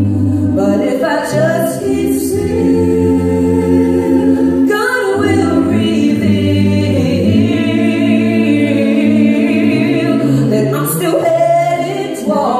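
A cappella gospel vocal group singing held chords in close harmony with no instruments, a low bass voice sustaining notes underneath.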